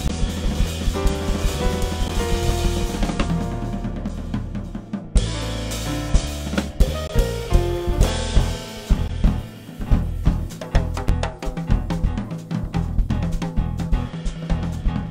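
Live instrumental band music from drum kit, electric bass and keyboard. Held bass and keyboard notes and chords come first. About halfway through, the drum kit enters with busy snare, kick and cymbal hits over the bass line.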